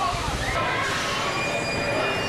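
People talking as passengers leave an amusement-park train, over a steady noisy hiss; faint high steady tones come in about halfway through.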